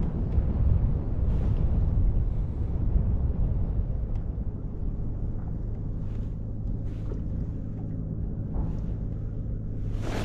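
Wind on the microphone and choppy water around a small fishing boat: a steady low rumble with a faint steady hum under it and a few faint ticks.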